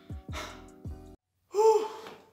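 Background music of sustained chords, with a few low falling swoops, cuts off suddenly just after a second in. Near the end a young man lets out a loud, exasperated sigh.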